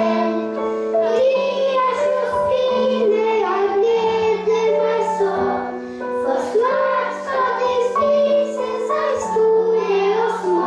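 A boy singing a Christmas song into a microphone, over an instrumental accompaniment of held chords that change every second or two.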